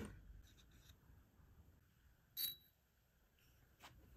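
Near silence, broken about two and a half seconds in by a single short, bright metallic clink from a wooden jewellery box as its drawer with a metal pull is handled. A faint click follows near the end.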